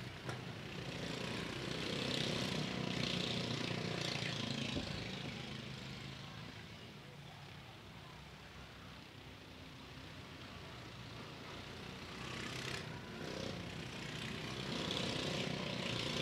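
Mini modified dirt-track race cars running laps, their engines swelling as they pass near, fading as they go round the far side, and rising again near the end.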